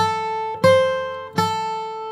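Steel-string acoustic guitar, capoed, playing three single picked notes slowly, each left to ring; the middle note is a little higher than the other two.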